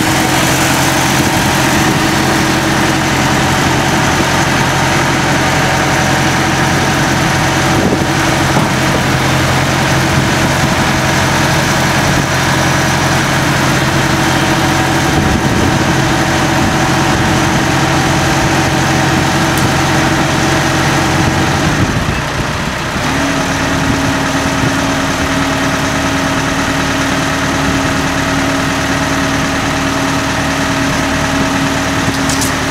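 Massey Ferguson tractor's diesel engine idling steadily. About 22 seconds in, the pitch drops slightly and then holds steady again.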